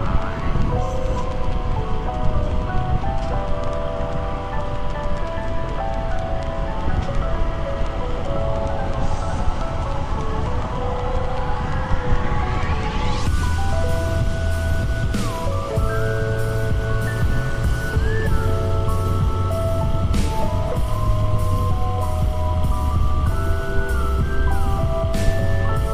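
Background music: a melody of held notes, a rising sweep about halfway through, then a steady beat of about two a second with heavy bass. Under it is the low rush of wind and road noise from the moving motorcycle.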